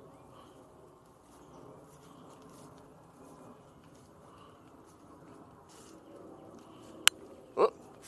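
A gigantic raindrop striking the camera with a single sharp tap about seven seconds in, over a faint, steady outdoor background.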